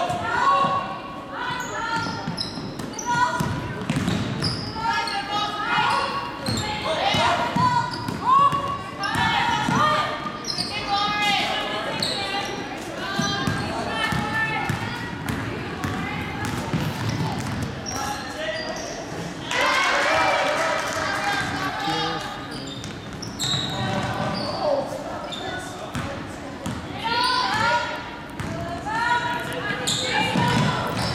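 Basketball game in a large gymnasium: a ball bouncing on the hardwood floor amid the calls and chatter of players and spectators, all echoing in the hall. The voices swell for a couple of seconds a little past the middle.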